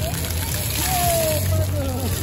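Floor-fountain water jets spraying and splashing onto wet paving, a steady rush of water, with children's voices calling in the background.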